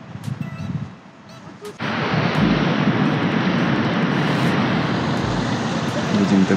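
Loud, steady street traffic noise that cuts in suddenly about two seconds in, after a quieter opening.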